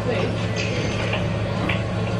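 Steady low mechanical hum with several light clicks and knocks over it.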